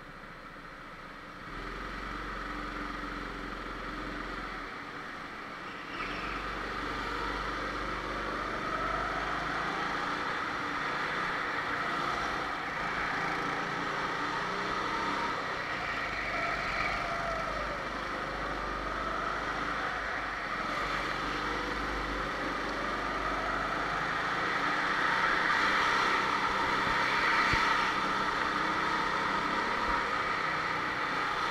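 Go-kart engines running on the track, their pitch rising and falling as the karts speed up and slow down. The sound gets louder about six seconds in.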